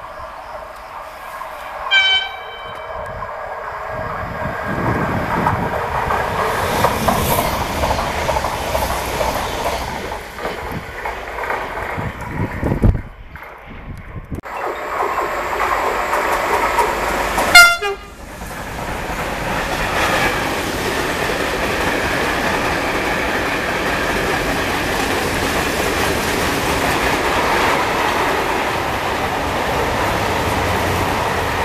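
Freight train arriving and passing on the line: the locomotive's horn sounds two short blasts, one about two seconds in and a louder one a little past halfway, followed by the steady noise of the wagons rolling past over the rails.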